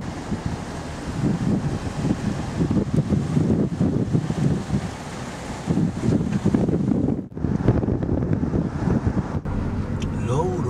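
Wind buffeting the camcorder microphone in uneven gusts, with a short dropout about seven seconds in.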